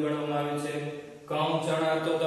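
A man's voice in long, drawn-out syllables held at a fairly steady pitch, a sing-song way of speaking, with a brief pause a little over a second in.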